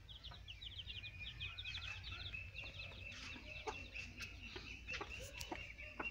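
A group of ducklings peeping in quick, high chirps, several a second, with a steadier high note joining about a second and a half in. A few faint knocks sound among the peeps.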